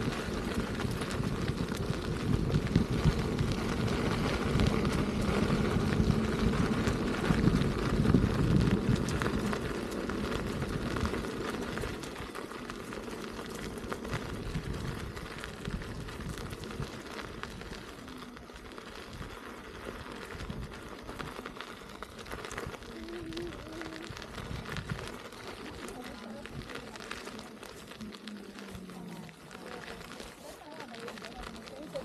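Electric unicycle tyre rolling over a gravel trail, a steady crackling hiss, with wind buffeting the microphone; louder for the first ten seconds or so, then quieter as the riding settles.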